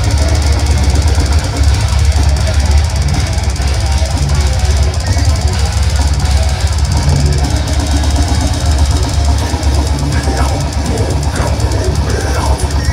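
Death metal band playing live at full volume: heavily distorted guitars and bass over fast drumming, recorded from the crowd with a heavy, booming bottom end.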